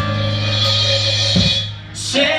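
Live rock-country band, with drum kit, electric bass and electric guitar, playing an instrumental stretch on a held chord. A drum hit comes about a second and a half in, the sound dips briefly, and the band strikes back in at the end.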